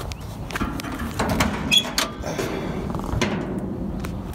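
The steel hood of a 1968 Chevy C10 being unlatched and raised: a series of metal clicks and knocks, with a short squeak near the middle.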